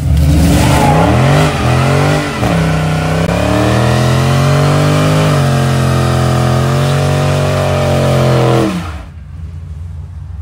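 2020 Dodge Charger Scat Pack Widebody's 6.4-litre HEMI V8 revving hard during a burnout, with the rear tyres spinning. The revs climb and dip twice in the first couple of seconds, are then held high and steady, and drop off suddenly about nine seconds in.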